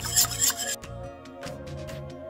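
Metal wire whisk stirring liquid in a stainless steel saucepan, scraping and clicking against the pan, then cutting off abruptly under a second in. Soft background music plays underneath and carries on alone.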